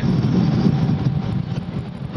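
Automatic car wash air dryers blowing on the car, heard from inside the cabin as a steady, loud rush of air.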